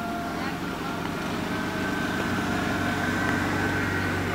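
A car engine running at low speed as the car creeps closer, growing steadily louder.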